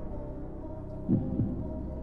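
Heartbeat sound effect: a double low thump a little after a second in, over a steady low drone of suspense music.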